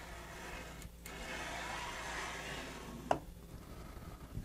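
Belt-driven axis of a Maker Select Plus 3D printer slid by hand along its rail: a faint soft rolling of belt, pulleys and idle stepper motor for a couple of seconds, then a single click about three seconds in.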